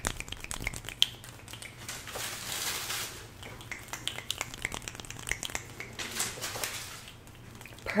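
Fast hand sounds close to the microphone: fingers fluttering and rubbing, with quick light clicks and snaps and short swishing rushes of skin and air.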